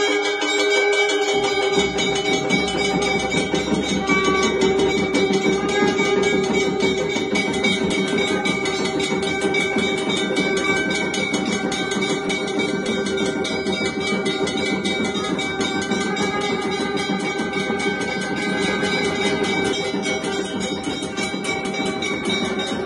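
Temple aarti ensemble: a large hourglass drum beaten rapidly and continuously, with temple bells ringing. From about two seconds in, a long steady blown tone, like conch shells, holds over the drumming.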